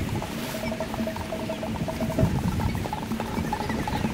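Hand drums played by a group: a steady run of quick hits, with a held note over the first couple of seconds.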